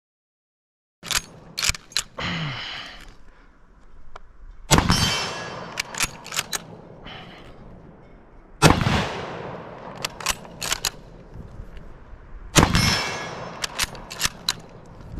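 Three shots from a Finnish Mosin-Nagant M39 bolt-action rifle, 7.62×54R, about four seconds apart. Each shot is followed by quick metallic clicks as the bolt is worked to eject the case and chamber the next round.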